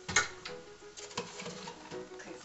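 A sharp click about a quarter second in, then a few lighter clicks and rustles: kitchen things being handled and put away in a cupboard.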